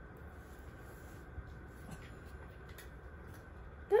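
Quiet room tone while waiting, then right at the end a small dog gives one short, loud bark on the "speak" command, falling in pitch.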